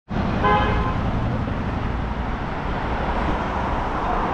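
Road traffic: a steady hum of cars driving past, with a brief horn toot about half a second in.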